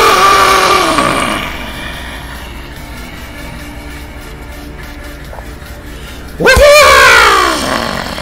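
A man's long drawn-out yell, falling in pitch and fading over the first second or so, then a second loud yell that rises and falls near the end, with music playing quietly underneath.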